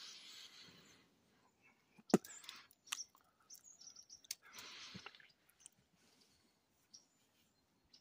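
Faint chirps and calls of small wild birds, with one sharp click about two seconds in and a few scattered short ticks.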